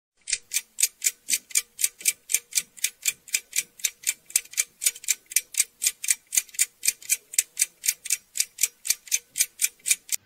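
Clock ticking sound effect marking a countdown: an even train of short, crisp ticks, about three to four a second.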